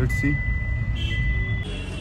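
Low, steady rumble of a car's cabin while driving, with a thin, steady high-pitched tone over it. Both cut off suddenly about a second and a half in.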